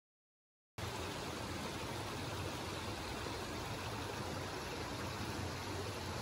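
Dead silence for nearly a second, then the steady rush of a running stream.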